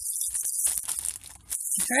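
Clear plastic loot bag full of jewelry crinkling and rustling as it is handled in the hands, with many small irregular crackles.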